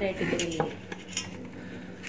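Stainless steel plates and tumblers clinking a few times as food is eaten from them.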